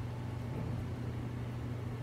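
Steady low hum with a faint even hiss: room tone, with no distinct handling sounds.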